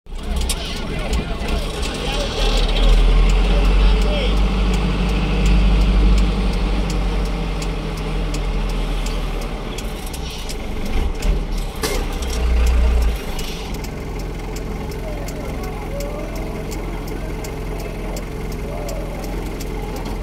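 Vehicle engine and road rumble heard from inside a moving car. The low rumble is heaviest for the first dozen or so seconds, then settles into a steadier, quieter drone. Faint voices come in during the last few seconds.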